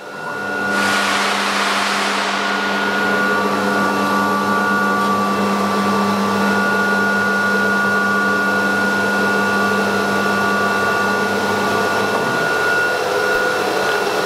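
Vacuum pump of a CNC router's vacuum hold-down table starting up about a second in, then running steadily with a hum and air noise.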